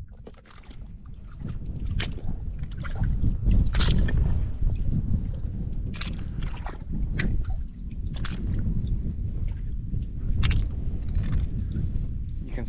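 Footsteps splashing and squelching through shallow water among rocks, irregular, about one step a second, over a steady low wind rumble on the microphone.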